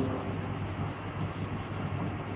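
Steady room noise, a low hum with a soft hiss, and no voice.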